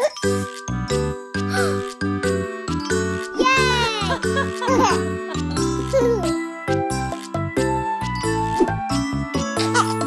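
Instrumental lullaby music with a tinkling, chime-like melody over soft bass notes, and a few short, gliding vocal sounds from a young child.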